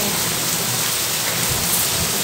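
Heavy rain falling, a steady even hiss of downpour.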